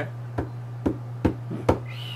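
A series of light, sharp knocks, about two a second and evenly spaced, over a steady low hum.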